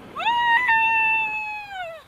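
One drawn-out, high-pitched shouted "hiii" or whoop of greeting: the voice rises quickly, holds for about a second and a half, then falls away at the end.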